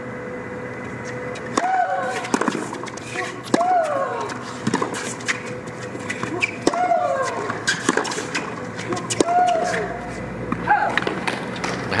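A tennis rally on a hard court: sharp racket-on-ball strikes and ball bounces, with a loud, pitched shriek on four of the shots that falls in pitch.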